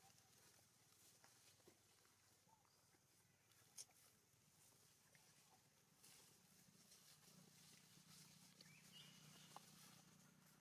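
Near silence: faint outdoor background with a few soft ticks, one a little louder about four seconds in, and a brief high chirp near the end.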